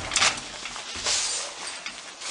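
A sharp knock right at the start, then a short breathy rush of noise about a second in.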